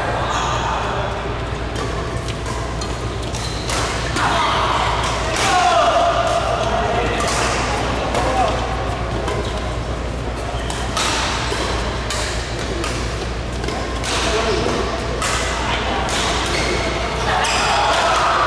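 Badminton doubles play: rackets repeatedly striking a shuttlecock with sharp hits, over a steady hum and voices in a large hall.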